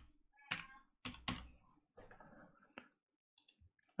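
Faint, irregular clicks and taps from computer mouse and keyboard use, five or six in all, with near silence between them.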